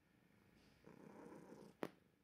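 A long-haired tabby cat purring faintly for about a second, followed by a single short click near the end.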